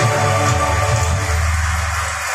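Karaoke backing music playing through loudspeakers, carried by deep, sustained bass notes that come in at the start.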